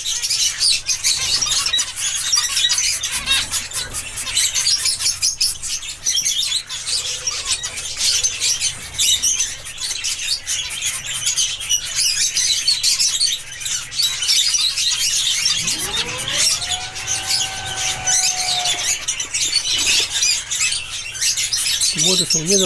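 Zebra finches chirping and twittering, a dense, steady high-pitched chatter. About two-thirds of the way through, a lower tone glides up and holds for about three seconds.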